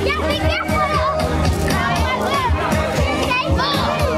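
Children's voices shouting and calling out while playing on a trampoline, over music with a steady, pulsing bass beat.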